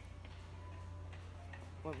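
Steady low background hum with a few faint ticks, and a short voice near the end.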